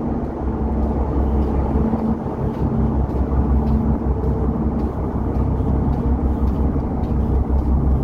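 Steady low drone of a cargo ship's engine under way, heard on the open side deck, with a steady hum and no change in pace. Faint light ticks of footsteps on the steel deck run through it.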